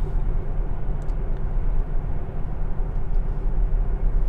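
Steady low road and tyre rumble with wind noise inside the cabin of a Tesla Model S P100D electric car cruising at about 70 km/h, with no engine note.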